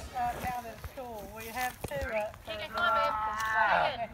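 Several people talking at a distance, voices coming and going, with a longer stretch of one voice near the end.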